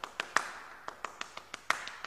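A quick, uneven run of sharp clicks or taps, several a second, over a faint hiss.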